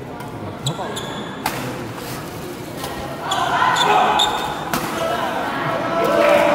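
Badminton rally: sharp racket strikes on the shuttlecock and short squeaks of court shoes on the floor. About halfway through, a crowd's voices rise, apparently as the point ends.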